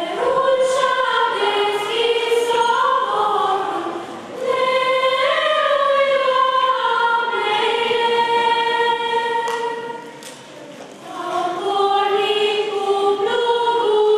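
A girls' choir singing a Romanian Christmas carol (colind) in long held phrases, with short breaks about four seconds in and again around ten seconds in.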